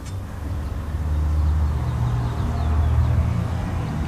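A 1968 Thunderbird's 429 Thunderjet V8 idling with a low, steady hum.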